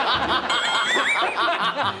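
Several people laughing at once, their laughs overlapping.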